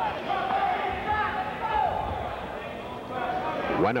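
Spectators' voices in a gym crowd, several people talking and calling out at once.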